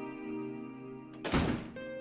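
A door shut with a single thud about a second and a half in, over soft guitar background music.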